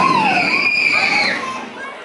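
Riders screaming as a roller coaster train passes, with long high-pitched cries over crowd chatter. The sound fades out near the end.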